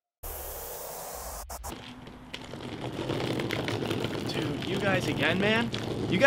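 Outdoor background noise that starts abruptly with about a second and a half of hiss and low rumble, which then drops away. A man's voice starts up and grows louder over the last few seconds.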